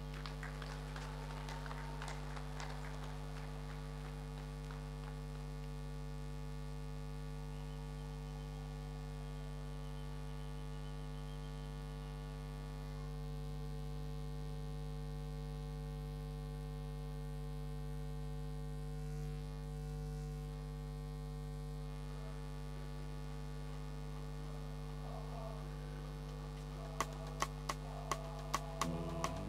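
Steady low electrical mains hum with a stack of unchanging overtones, with a few faint clicks near the end.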